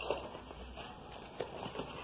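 Faint handling of a picture book's paper pages, soft rustling with light taps and a small knock about one and a half seconds in.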